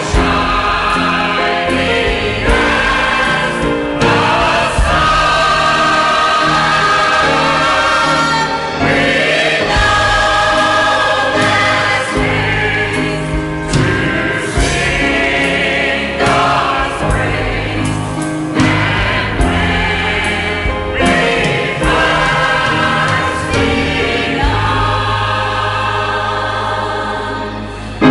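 Church choir singing with instrumental accompaniment, steady low bass notes sounding under the voices.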